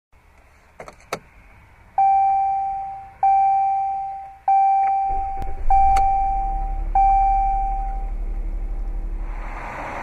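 A couple of clicks, then five chimes from a 2014 Jeep Cherokee's instrument cluster as the ignition comes on, each dying away, about a second and a quarter apart. About five seconds in, its 3.2-litre Pentastar V6 starts and settles into a low, steady idle under the chimes.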